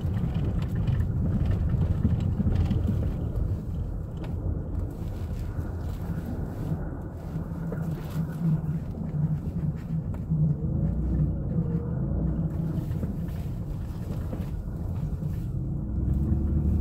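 A van's engine and tyres running at driving speed, heard from inside the cabin as a steady low rumble.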